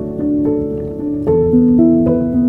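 Piano music: a slow melody rings over held notes, and a new low chord is struck a little past one second in.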